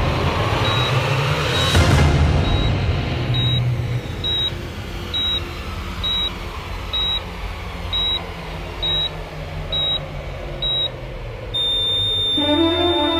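Hospital patient monitor beeping about once a second with the pulse, over low, dark dramatic music. Near the end the beeps give way to a continuous steady tone: the flatline alarm as the pulse reading is lost.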